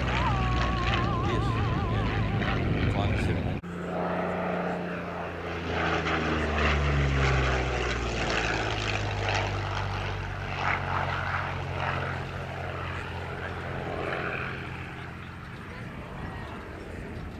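Curtiss P-40 fighter's piston engine droning in a display pass. After a sudden break about three and a half seconds in, its pitch falls over the next few seconds as it passes and then slowly fades.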